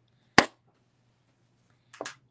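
A single sharp click about half a second in, over a faint steady low hum.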